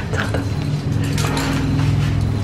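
Hair being washed at a salon shampoo basin: water and hands working through wet hair under a steady low hum, with a few light clinks near the start.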